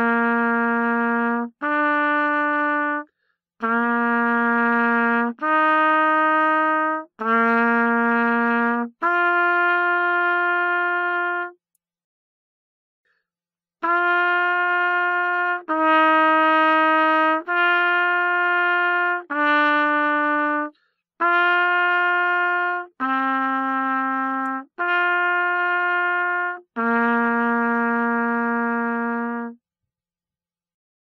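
Trumpet playing a warm-up interval exercise in separate held notes of about a second and a half each. The first half works upward, a low note alternating with ever higher ones. After a short pause near the middle, a higher note alternates with ever lower ones, ending on a longer low note.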